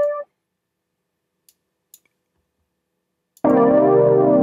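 A software electric piano (Reason's Velvet) lets a single held note cut off, then near silence broken only by a few faint clicks. About three and a half seconds in, a full electric piano chord starts and sustains.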